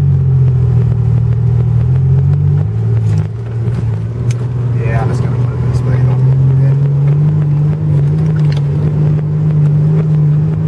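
Mitsubishi Pajero's engine heard from inside the cabin, driving along a soft sand track: a steady drone that drops in pitch about three seconds in and climbs back over the next few seconds. A few short knocks and rattles come through, with a brief voice about halfway.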